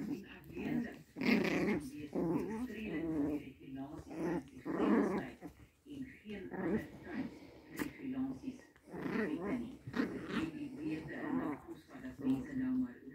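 Pomeranian puppies growling in irregular short bouts as they play-fight, the growls of play rather than aggression.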